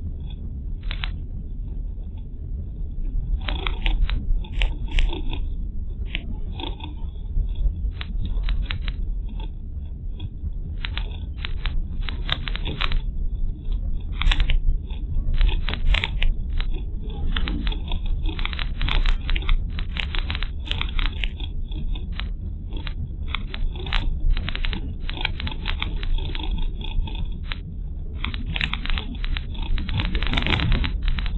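Car driving, heard by a dashcam microphone inside the cabin: a steady low road and engine rumble with frequent irregular crackling and clicking.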